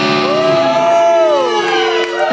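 Electric guitar in a live rock band playing long held notes that glide in pitch, rising in the first half-second, holding, then falling away near the end.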